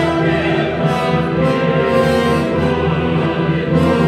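Mixed opera chorus of men and women singing with a full orchestra, in sustained held notes.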